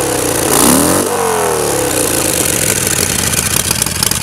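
2011 Harley-Davidson Sportster Iron 883's air-cooled V-twin, with a straight pipe and K&N breather, revved by hand. The revs fall away at the start, climb again to a second peak about a second in, then wind down to idle.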